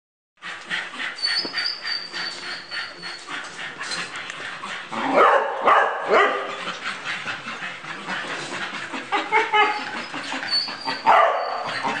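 Several dogs in kennel runs barking in a continuous, overlapping chorus, louder around five to six seconds in and again near the end.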